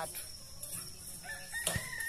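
A rooster crowing: one long, high, steady call beginning a little past halfway, with a short sharp knock just after it starts.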